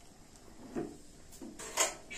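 A spatula stirring a watery rice and tomato mixture in an aluminium pressure cooker, with a few short scrapes and knocks against the pot, the loudest near the end.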